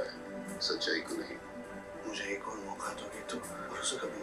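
Film trailer soundtrack played back: a man's lines of dialogue over a low, sustained background music score.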